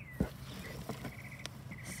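Hand digging through moist compost in a plastic worm bin, with a sharp thump just after the start and a lighter knock about a second and a half in. A bird chirps in quick short notes in the background.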